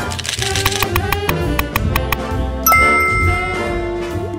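Intro jingle: upbeat music with a quick run of clicks in the first second, then a bright ding about two-thirds of the way through that rings on to the end.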